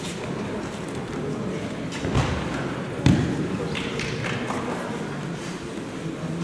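Two heavy thuds of a body hitting padded tatami mats during a throw and fall, the first about two seconds in and a louder one about a second later.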